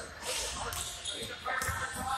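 Basketball bouncing on a hardwood gym floor as it is dribbled, a few separate bounces, echoing in a large hall, with players' voices in the background.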